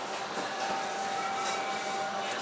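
A steady, even machine whir with one constant mid-pitched tone running through it, like a fan running.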